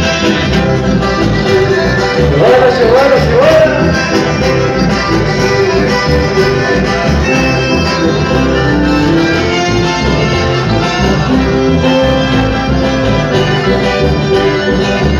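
Live chamamé band playing: bandoneón and button accordion carry the melody over electric bass and acoustic guitar with a steady beat. A voice glides briefly about two to three seconds in.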